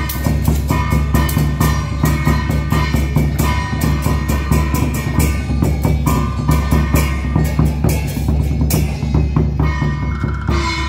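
Traditional Chinese temple drum-and-gong percussion, played loud and fast: dense, continuous drum strikes with ringing metal percussion over them.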